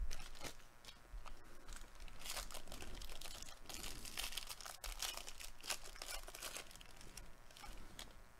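The wrapper of a Bowman Baseball jumbo trading-card pack crinkling and tearing as it is ripped open by hand, with irregular crackles throughout.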